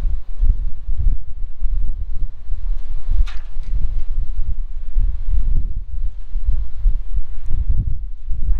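Gusty wind buffeting the microphone: a loud, low rumble that keeps rising and falling.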